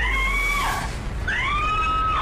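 Two long, high-pitched wailing cries, each gliding up in pitch and then holding for most of a second: one at the start and another in the second half.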